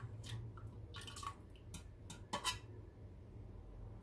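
A few short clicks and wet taps in the first two and a half seconds, the loudest about halfway through, as a metal spoon works among beef pieces on wet rice in a pan. A low steady hum runs beneath.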